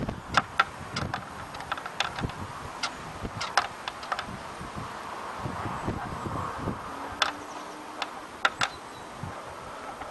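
Handling noise on a handheld camcorder: scattered small clicks and taps at irregular intervals over a light steady hiss.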